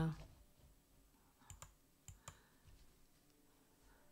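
Quiet pause with a few faint, short clicks, the clearest two about one and a half seconds in and just after two seconds.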